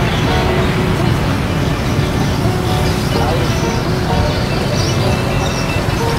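Steady, loud outdoor noise, a low rumble with road traffic in it, and faint background music running underneath.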